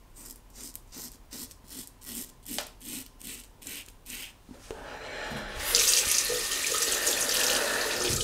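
Short scraping strokes of a 1940s GEM Flip Top G-Bar single-edge safety razor cutting through lathered stubble, about three or four a second. About five seconds in, a tap starts running into the basin, louder from about six seconds on.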